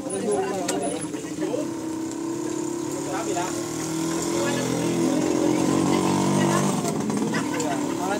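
Indistinct chatter of people gathered close by, with a motor vehicle engine running steadily nearby, most prominent through the middle and later part.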